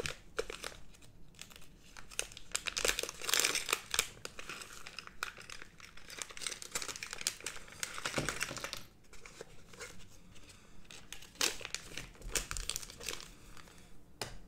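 Small clear plastic bag of electronic components being handled and opened, crinkling and crackling in irregular bursts as the parts are shaken out onto the table.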